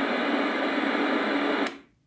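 Homemade regenerative airband receiver putting out a steady rush of static between transmissions, which cuts off suddenly near the end as the squelch closes.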